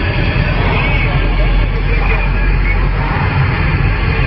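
CB radio receiver hiss and static on the 27 MHz band, steady and loud, with a faint, unintelligible voice from a distant station buried in the noise.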